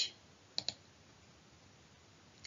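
Two short, sharp clicks close together about half a second in, then faint room tone.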